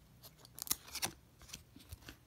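Stuck-together 1994 Topps baseball cards being peeled apart and slid off the stack, their UV coating giving a handful of short, sharp cracks as the cards let go.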